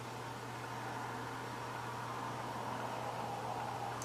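Steady background hiss with a constant low hum: room tone with no distinct event.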